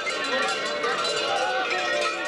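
Many large mummers' bells clanging and ringing on babugeri costumes, with a crowd's voices throughout.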